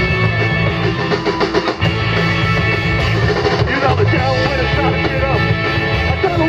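Live garage-punk rock band playing loud: electric guitar, bass and drum kit, recorded from within the audience.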